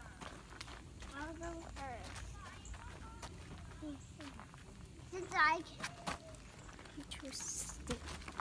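Children's voices calling out in short bursts, with a high-pitched call about five seconds in, over scattered light knocks and scuffs.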